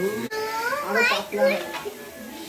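Children's high-pitched voices chattering and calling out, with no clear words.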